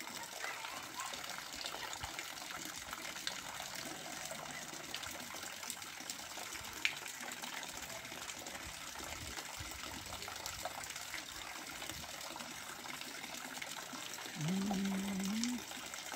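Water running steadily into a fish pond. Near the end there is a short pitched tone of about a second that rises slightly.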